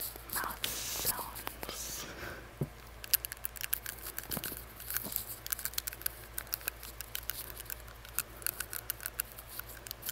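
Rapid, irregular clicking of a metal tongue ring against the teeth, made right at a microphone held against a face mask. It starts after a couple of seconds of breathy, whispery mouth sounds.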